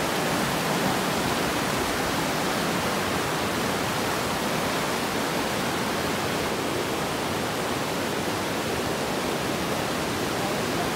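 Steady rushing of a rocky mountain river's rapids, an even wash of water noise that does not change.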